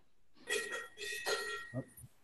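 A brief snatch of recorded music with a steady bell-like ringing tone, starting about half a second in and cutting off near the end as the song's playback is started and stopped.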